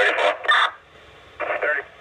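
Police two-way radio traffic through a Motorola mobile radio's speaker: a short hiss of static at the start, a quiet gap, then a brief clipped fragment of a radio transmission.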